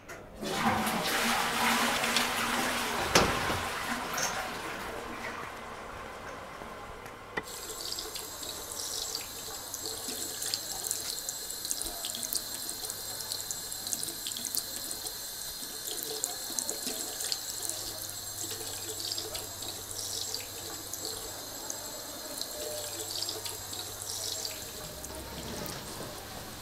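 Water running from a tap into a ceramic washbasin as hands are rinsed under it, splashing with many small crackles. A louder rush opens the sound, with a thump about three seconds in.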